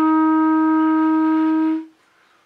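Solo clarinet holding one long, steady note of a slow melody, tapering off shortly before the end.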